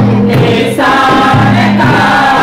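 Three women singing a Christian worship song together into microphones, holding long sung notes.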